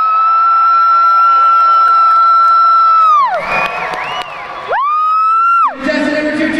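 A spectator close by giving a long, high "woo" that rises, holds steady for about three seconds and falls away, then a second, shorter one near the end, with the arena crowd cheering between them.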